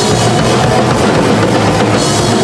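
Loud live thrash metal band playing, with a drum kit pounding steadily under electric guitar.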